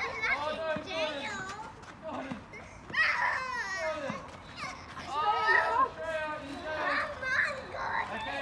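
Young children's high-pitched voices calling and shouting over one another in spurts, typical of kids at play.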